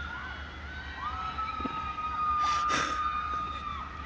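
A group of girls' voices holding a long, high scream. One cry starts at the outset, and a longer one is held steady from about a second in until just before the end.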